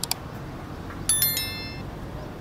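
Subscribe-button sound effect from an on-screen like-and-subscribe overlay: a short click, then about a second in a burst of clicks followed by a bright chime of several high ringing tones that fades out within about a second.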